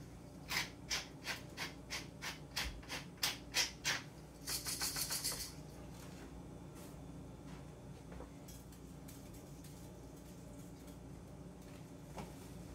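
About a dozen quick scraping strokes at a kitchen counter, some three a second, then a brief high hiss about four and a half seconds in, followed by quiet room tone.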